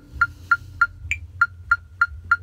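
Electronic metronome click track ticking steadily at about three and a half beats a second, with one higher-pitched accented beep about a second in, while the drum kit is silent.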